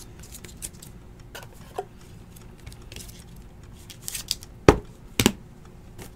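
Trading cards and rigid plastic top loaders being handled: soft rustling with scattered small plastic clicks, then two sharp plastic clacks about half a second apart near the end.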